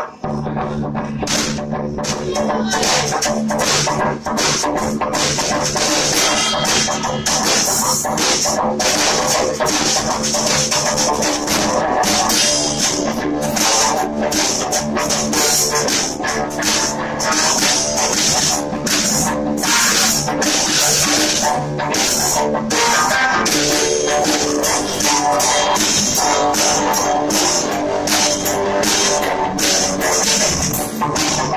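Live rock playing by electric guitar and drum kit, starting at the very beginning and then running at a steady driving pace with regular drum and cymbal hits under the guitar.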